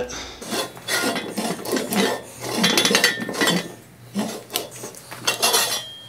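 Steel mast of a pickup bed crane being turned back and forth inside its freshly greased steel sleeve: irregular metal-on-metal scraping and rubbing, with a few brief squeaks and clinks in the middle.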